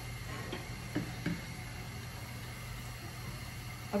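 Quiet steady hiss and low hum while an oiled tawa heats on a gas stove, with a few soft clicks about a second in from a steel oil pot being handled.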